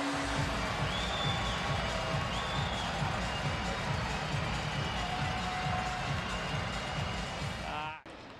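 Hockey arena crowd cheering a goal while celebration music plays over the arena sound system with a fast, steady low beat. A low held horn note stops about half a second in, and the sound cuts off abruptly at the end.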